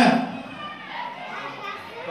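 A man's amplified voice through a microphone breaks off at the start, leaving quieter background chatter of guests with children's voices in a large hall.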